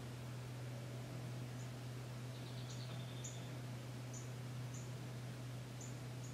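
Quiet room tone: a steady low hum with a few faint, short high ticks scattered through it.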